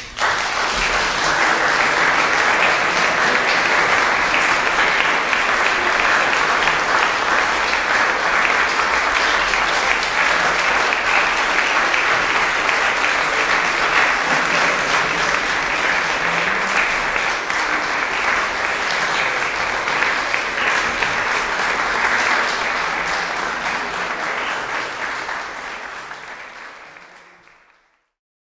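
Audience applauding, starting abruptly as the music ends, holding steady, then fading out over the last few seconds.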